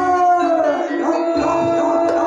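Live Javanese gamelan music for a barongan show: a long drawn-out high melody note, then another about a second in, over intermittent low beats.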